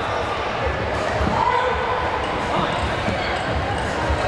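Taekwondo sparring in an echoing gym: irregular dull thuds of feet and kicks on the wooden floor and padded chest protectors, under the talk and calls of many voices around the hall.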